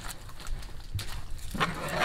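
Water sloshing in a large iron wok as a wire-mesh strainer stirs shredded radish in hot water. Near the end comes a louder, rough sound lasting about half a second.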